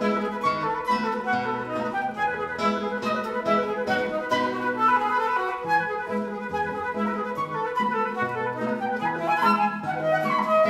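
A flute and a classical guitar play together: the flute runs through quick notes of the melody over plucked guitar chords and bass notes.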